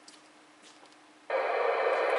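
Yaesu FT-991A transceiver's squelch being opened on an FM 2-meter repeater channel: after a faint hum, the speaker suddenly gives a steady rush of hiss about two-thirds of the way in. The receiver passes audio with no tone needed on the downlink, an encode-only (open squelch) repeater setup.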